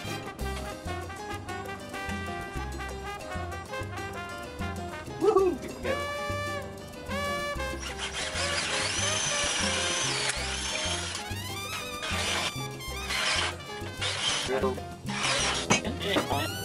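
Background music with a steady beat, over which a cordless drill runs for about three seconds midway and then in several short bursts, boring guide holes for lag bolts through the wooden bench top.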